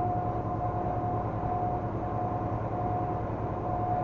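Steady road and engine noise of a vehicle driving at highway speed, heard from inside the cab, with a thin, constant high whine running through it.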